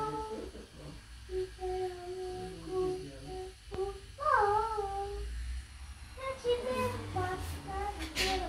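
A young girl humming a wordless tune to herself, holding some notes steady and sliding between others.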